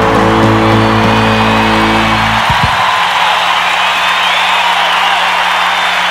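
A song's final held chord rings out and stops about two and a half seconds in. Cheering and applause from a live audience follow, with a faint steady low hum under them.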